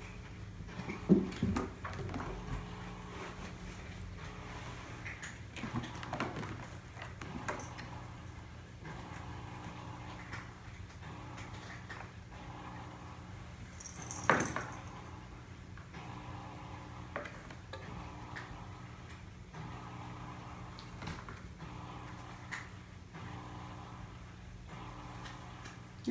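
Kittens playing and wrestling: scattered light thumps, scuffles and knocks against the floor and a carpeted cat tree, the sharpest about a second in and about fourteen seconds in, over a steady low hum.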